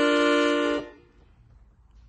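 Boppola Platinum III piano accordion holding a closing chord, several steady reed tones sounding together, which stops about a second in, leaving faint room tone.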